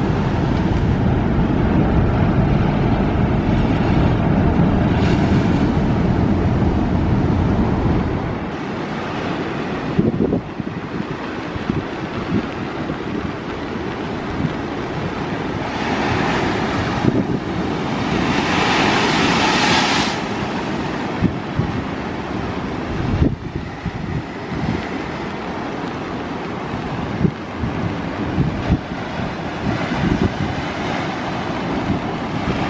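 Rough monsoon sea surf breaking and washing over rocks, with heavy wind buffeting the microphone for about the first eight seconds until it stops suddenly. A little past the middle, a big wave surges in and the hiss of the wash swells to its loudest.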